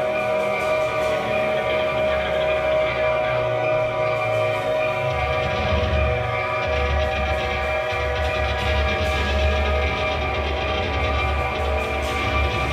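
Live rock band playing an instrumental passage on electric guitar, bass and drums over held, droning tones. The bass moves to a new note about five seconds in and again near seven.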